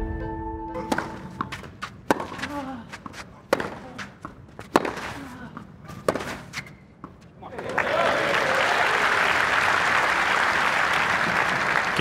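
A short musical sting ends about a second in. Then a tennis rally: the ball is struck by rackets several times, a second or so apart. Crowd applause follows about two-thirds of the way through and carries on.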